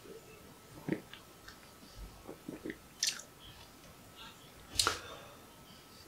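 Faint wet mouth clicks and lip smacks of someone tasting a mouthful of stout, a handful scattered through, the loudest about five seconds in.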